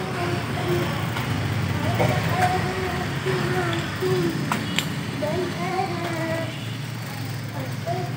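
Bicycles rolling over a paved lane with a steady low rumble, a few sharp clicks, and a distant voice with drawn-out, wavering pitch carrying over it.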